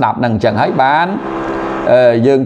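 A man's speaking voice, with one syllable drawn out into a long steady hum in the second half.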